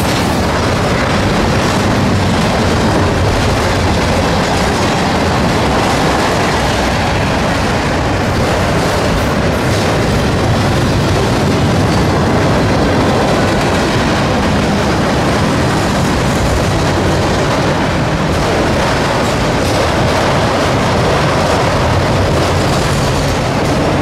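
Freight train cars rolling past close by, a steady loud noise of steel wheels on rail that does not let up.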